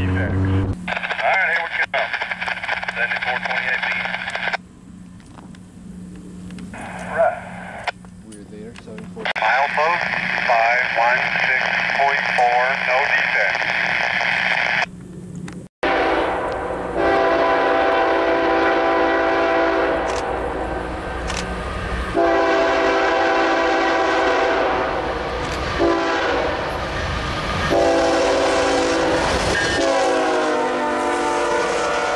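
Diesel freight locomotive's air horn sounding the grade-crossing pattern, long, long, short, long, as the train approaches the crossing, over the low rumble of the train. Before it, in the first half, a voice-like sound broken by two short pauses.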